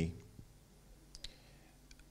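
A man's voice over a microphone ends a word at the very start. A pause follows: quiet room tone with a few faint, short clicks spread through it.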